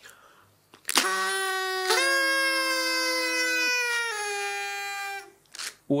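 Two paper party blowers tooted together in long, steady, buzzy tones. One starts about a second in and the second joins a second later at a different pitch. They stop one after the other, the lower one first.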